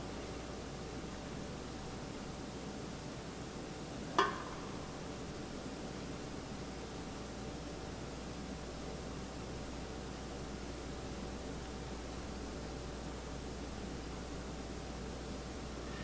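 Quiet, steady hiss of room tone with a faint hum while the melted oil is poured silently into a silicone mold; a single brief, rising squeak about four seconds in.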